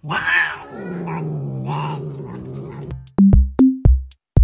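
A domestic cat growls in one long, low yowl for about three seconds while it is being lifted away from its food bowl. Electronic music with a drum-machine beat cuts in abruptly near the end.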